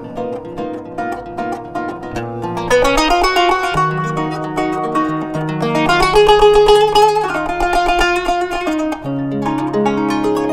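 Kanun, the Turkish plucked zither, played solo: a quieter opening that swells about three seconds in into dense, fast runs of plucked notes over ringing low strings, loudest around the middle.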